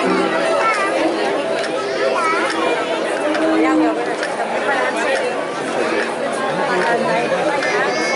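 Crowd chatter: many people talking at once in overlapping voices, none standing out.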